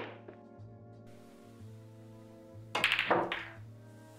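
Background music with sustained tones. There is one sharp click at the start, and about three seconds in comes a quick cluster of loud clacks: a cue striking the cue ball and pool balls knocking together.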